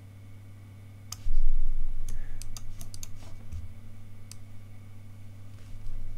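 Computer keyboard keystrokes and mouse clicks: a scattered handful of sharp clicks, most bunched together about two to three seconds in, over a steady low hum. A low thump comes just over a second in.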